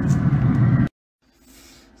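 Steady mechanical hum with hiss, strongest in the low range, that cuts off abruptly about a second in. After it comes a faint steady hiss.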